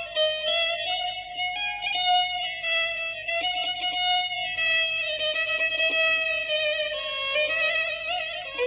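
Solo violin playing a slow, ornamented melody in the Afshari mode of Persian classical music, with held notes that waver and slide from one pitch to the next.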